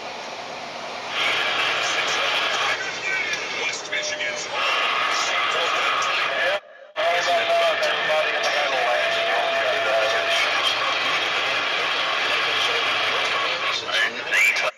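Semi-truck cab noise, the road and engine running steadily, under indistinct voices from the cab radio. The sound cuts out for a moment about seven seconds in, where one dash-cam clip gives way to the next.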